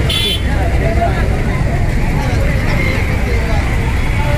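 Steady low rumble of a truck engine idling under the voices of a crowd, with a brief high-pitched tone at the very start.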